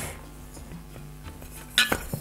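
Glassware handled on a wooden tabletop: mostly quiet small clinks, then one short, sharp glass knock near the end as a glass whisky bottle is lifted off the table.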